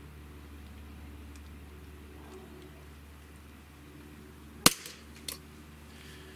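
Barra 1911 CO2 blowback pistol's trigger breaking under a trigger-pull gauge: one sharp snap as the hammer falls, about four and a half seconds in, then a softer click about half a second later. The trigger breaks at a pull of four pounds fourteen ounces.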